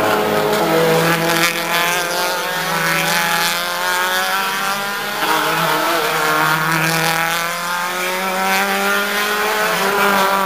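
Several race car engines at hard throttle, their pitch climbing and then dropping again and again through gear changes as the cars accelerate along the straight.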